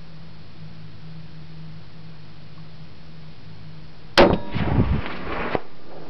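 A single .308 rifle shot from a Remington 700 LTR, a sudden loud crack about four seconds in, followed by about a second and a half of ringing, crackling tail.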